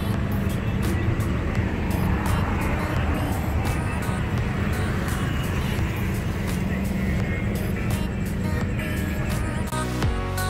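Music over a steady rush of street traffic.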